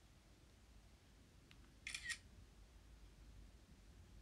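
A brief, sharp double click about two seconds in, against near silence.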